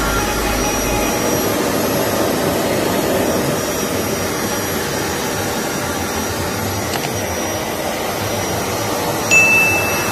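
Hoover upright carpet cleaner running steadily as it is pushed over carpet while shampooing, with its motor and suction giving a steady rush with a thin high whine. A short, louder high tone comes near the end.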